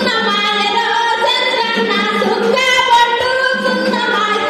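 A woman singing a Telugu song into a microphone, with long held notes.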